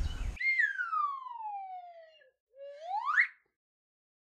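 Whistle-like transition sound effect added in editing. A single tone glides slowly down for about two seconds, then sweeps quickly back up, set in dead silence after the outdoor background cuts off about half a second in.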